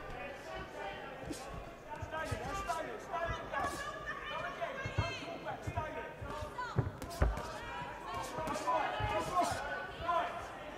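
Arena crowd and corner voices shouting over one another, with dull thuds of gloved boxing punches landing, the loudest a sharp one about seven seconds in.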